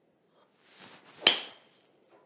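Whoosh of a golf driver swing, then a single sharp metallic crack as the TaylorMade M1 driver's titanium head strikes the ball, with a brief ring. The strike comes a little after a second in.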